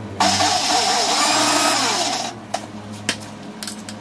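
Electric mixer grinder (mixie) run in one short burst of about two seconds for a coarse grind of the coconut mixture, starting suddenly and stopping again. A few clicks of the jar being handled follow.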